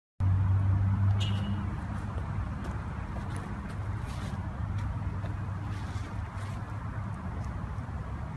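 Steady low rumble of outdoor background noise, like road traffic, with a few faint brief clicks.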